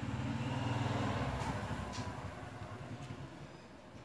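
A motor vehicle's engine hum passes by, swelling about a second in and then fading away. A few faint clicks sound over it.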